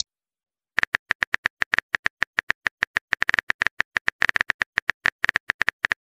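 Phone keyboard typing sound effect: a rapid, uneven run of key clicks, about ten a second, starting about a second in and stopping just before the end, as a text message is typed out.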